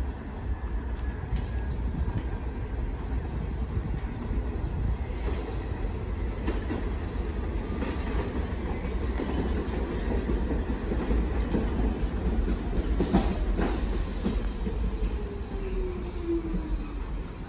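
New York City subway N train pulling into the station, a steady rumble with wheels clicking over rail joints. A brief burst of hiss comes near the end, followed by a falling motor whine as the train slows.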